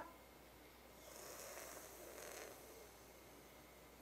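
Faint, airy hiss of a breath drawn in through a curled tongue (Sitali pranayama), starting about a second in and lasting about a second and a half.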